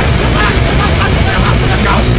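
Loud, heavily distorted hardcore/metal music with harsh shouted vocals over a dense wall of guitar.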